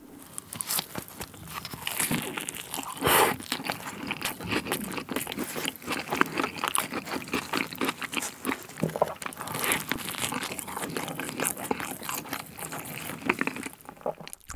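Close-miked biting and chewing of a slice of sweet potato pizza: a steady run of crunches and mouth clicks, with a louder crunch about three seconds in.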